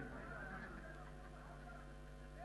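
Steady electrical hum of a public-address system, with the amplified man's voice echoing and dying away in the first half-second after he stops speaking.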